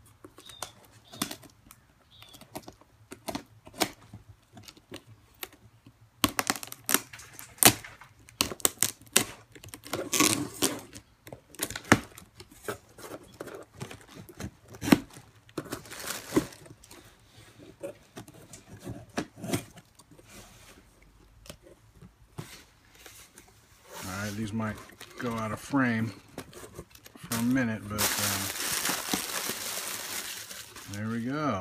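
Cardboard shipping box opened by hand: packing tape torn and peeled, flaps scraping and clicking. Near the end, a bubble-wrapped package slides out with a loud rush of crinkling, and a voice is briefly heard just before it.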